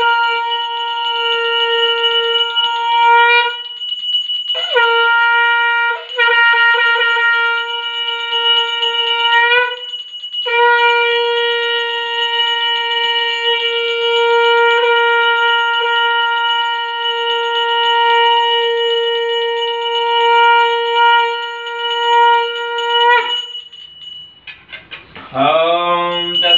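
Conch shell (shankh) blown in three long blasts held on one steady note. The first ends about three and a half seconds in. The second lasts about five seconds with a brief dip. The third is held for about thirteen seconds before cutting off near the end.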